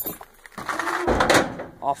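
A pickup truck door unlatching with a click, then about a second of rustling with a dull thump as the door swings open and someone climbs out.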